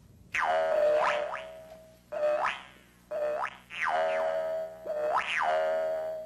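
A twanging boing sound effect, repeated about five times, its tone sweeping down and then bending back up each time.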